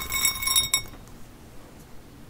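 Crushed walnut-shell bedding granules rattling into a glass bowl as hands let them fall, the glass ringing with several steady high tones. The clatter and ringing stop a little under a second in, leaving only a faint rustle.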